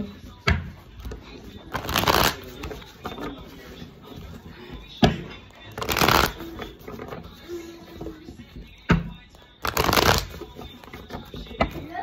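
A tarot deck shuffled by hand: three riffle shuffles about four seconds apart, each a short burst of fluttering cards, with lighter clicks and knocks of the cards between them.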